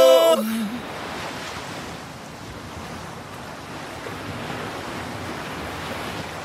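The last sung note of a song ends about half a second in, leaving a steady rushing noise with no tune or beat, like surf, as the track's outro.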